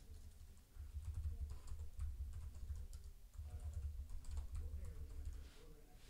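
Computer keyboard typing: a faint, quick run of keystrokes.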